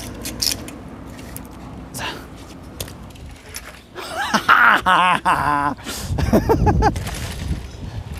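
Light clicks and rattles of a recovered bicycle being handled, then a loud, drawn-out wordless shout of joy about four seconds in, followed by a low rumbling noise near the end.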